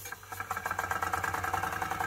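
Wilesco D305 toy steam engine starting up on compressed air and running with a fast, even chuffing beat. The beat starts about a third of a second in, once the valve is opened.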